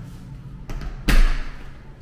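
A closet door being pushed shut, landing with one loud thud about a second in.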